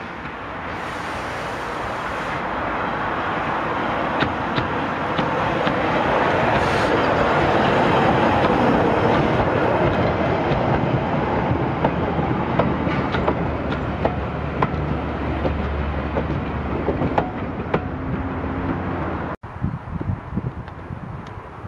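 LSWR O2 class 0-4-4 tank engine W24 hauling a van and coaches past at close range: the running noise swells to its loudest as the engine goes by, then the train's wheels keep clicking over the rail joints as the coaches pass. It cuts off abruptly just before the end.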